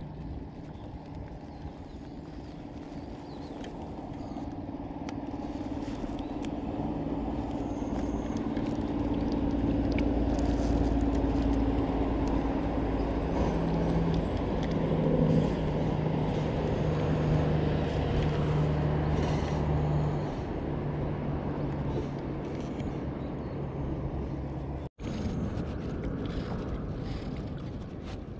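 An engine droning steadily, growing louder over about ten seconds and then holding, its pitch stepping up partway through; a brief dropout cuts it near the end.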